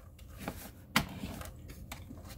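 Sheet of cardstock being handled and slid over a plastic paper trimmer, with a sharp tap about a second in.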